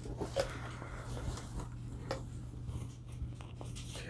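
Faint rustling of a hoodie's fabric being handled, with a few light clicks scattered through it and a steady low hum underneath.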